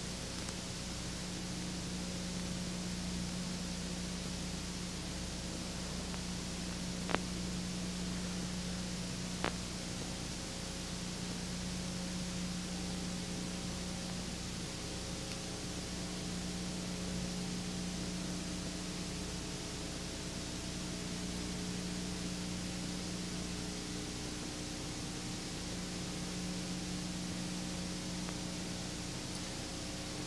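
Steady hiss with a low hum underneath and a few faint steady tones, broken by two short clicks, about seven and nine and a half seconds in.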